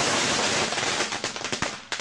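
Fireworks going off inside a desktop computer: a dense crackling hiss of sparks that thins out after about a second into scattered sharp pops.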